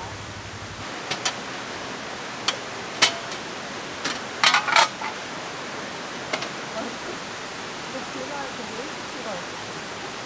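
A steady rushing noise, like running water, with a scatter of sharp clicks and clinks between about one and five seconds in, the busiest cluster a little before five seconds.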